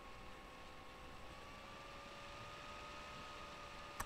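Faint steady hum with background hiss, its pitch creeping up slightly a second or two in; a single sharp click at the very end.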